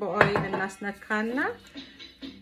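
A short metallic clatter from the baking sheet being handled, about a quarter second in, with a voice going on throughout.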